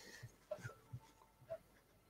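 Near silence: room tone with about three faint, short, soft ticks spread across the two seconds.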